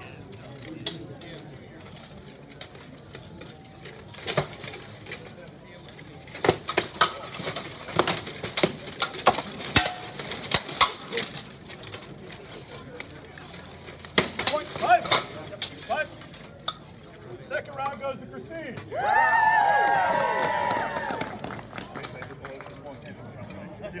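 Weapons striking steel plate armour and a shield in armoured combat: a quick run of sharp metallic clanks and knocks from about six to eleven seconds in, and a few more around fourteen seconds. Near the end a loud, drawn-out voice call rings out for about two seconds.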